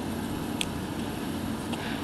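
Steady background hum and hiss, with a faint short click about half a second in.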